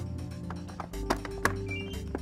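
Fluke DSX-5000 cable analyzer giving a short two-note rising chirp near the end, the signal that its main and remote units have connected through the link. Before it come a few sharp clicks of an RJ45 patch cord plug being handled in a jack, over background music.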